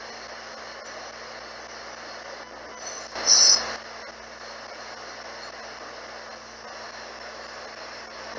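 Spirit box sweeping radio stations: a steady hiss of static over a low hum, with a short louder blast of static about three seconds in.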